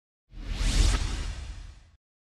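Edited-in whoosh sound effect with a deep rumble under a hissing rush, swelling soon after the start and fading away over about a second and a half. It marks a transition to a replay of the scene.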